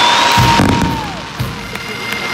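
Fireworks bursting overhead with deep thuds and a dense crackling hiss. A long, high held whistling tone bends down and stops about a second in. Near the end the massed bagpipes begin to sound.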